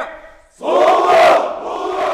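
Military honor guard shouting in unison, the ceremonial reply to a greeting: one loud, drawn-out collective shout that starts about half a second in and fades toward the end.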